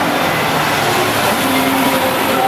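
Steady street traffic noise dominated by a city bus passing close by, its diesel engine running.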